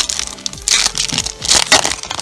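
Foil booster-pack wrapper crinkling and tearing as it is ripped open by hand. The crackle comes in two louder bursts, about half a second in and again about a second and a half in.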